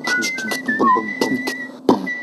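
Layered mouth-made music from one performer: a held whistle runs over beatboxed clicks and hits and short hummed vocal notes, in a repeating rhythm. A sharp beatbox hit lands near the end.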